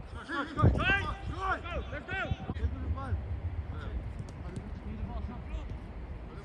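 Footballers' voices calling out across a training pitch, loudest about a second in, over the thuds of running feet and kicked balls on grass.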